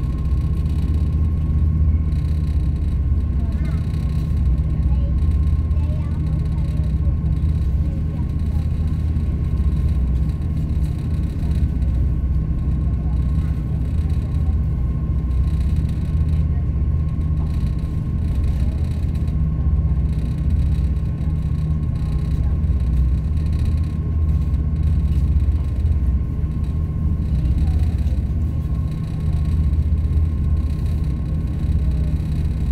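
Engine drone of a passenger ferry underway, heard inside its cabin: a steady low rumble with a constant thin whine above it.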